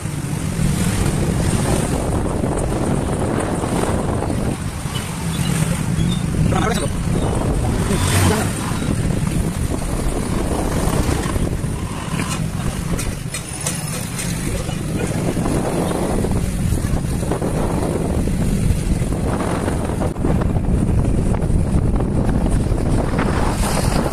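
Wind buffeting the microphone on a moving motorbike, a heavy, steady rumble, with the bike and passing street traffic underneath.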